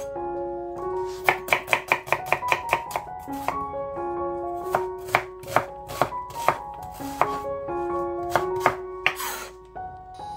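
Chef's knife dicing an onion on a wooden cutting board: a quick run of about a dozen chops, roughly seven a second, about a second in, then slower single chops. Soft background music plays along.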